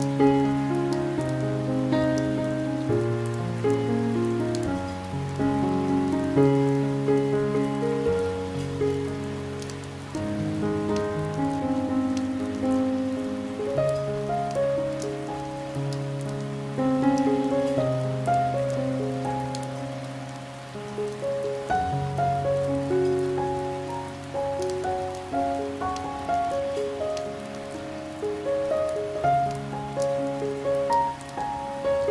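Slow, gentle piano music, low bass notes held under higher melody notes, laid over steady rain with individual drops ticking.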